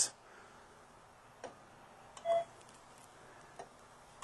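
A single short electronic beep about two seconds in, marking a measurement point taken with the probe of a portable CMM arm during alignment. A faint click comes before it and another near the end.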